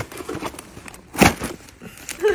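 A cardboard mailing carton being pried and pulled open by hand, with a few small crackles and one loud, sharp noise about a second in.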